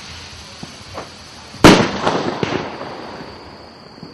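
A firework shell bursts with a sudden loud bang about a second and a half in, and the bang dies away over the next two seconds with a few smaller cracks; a faint pop comes about a second in.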